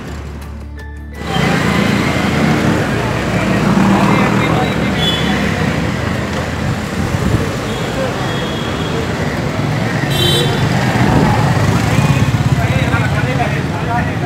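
Busy city street traffic: cars and motorcycles passing, with people's voices mixed in. The first second is quieter.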